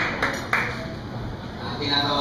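Audience applause in a hall, a few last claps that die away in the first half-second, then a voice starting up just before the end.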